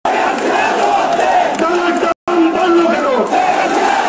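A crowd of protesters shouting slogans together, many voices with drawn-out chanted syllables. The sound starts abruptly and cuts out completely for a moment about two seconds in.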